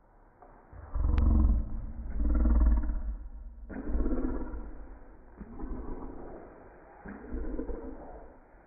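A person making deep, drawn-out slow-motion vocal groans, about five in a row of roughly a second each, the first two the loudest, with a short click about a second in.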